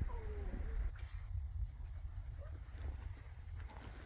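A baby makes a short vocal sound that falls in pitch in the first second, then stays quiet apart from faint scattered sounds. A low rumble runs underneath.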